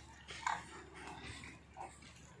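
Waterfowl calling: one short call about half a second in and a second, fainter one near the end.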